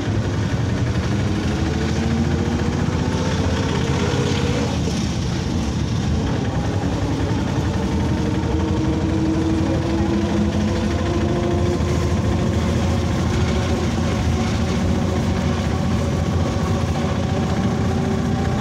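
Engine of a moving auto-rickshaw (tempo) heard from on board, running continuously with its pitch drifting up and down as it changes speed, over steady road noise.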